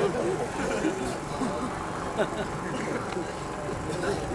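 Crowd of people murmuring and chattering, many voices at once with no one voice standing out.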